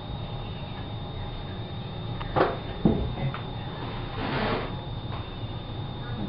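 Handling noise from metal forks and spoons being fitted together and brought to a wine glass: two small sharp clicks a little over two seconds in, about half a second apart, then a brief soft hiss around four seconds in, over a steady faint hum with a thin high whine.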